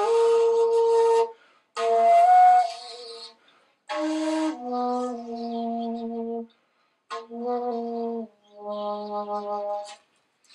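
Geoffrey Ellis Basketmaker rim-blown flute of Alaskan yellow cedar, keyed in G sharp, played in five short, breathy phrases of a few notes each, separated by brief pauses. The tone carries a lot of air noise, as the player is still working out how to sound this rim-blown flute, which he finds a little harder to play than his usual one.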